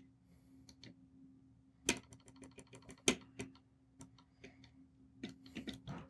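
Plastic push buttons on Audio Limited A10 wireless bodypack transmitters clicking as they are pressed to step the frequency. There are a few louder single clicks, a rapid run of about eight clicks a second around two seconds in, and a cluster near the end, over a faint steady hum.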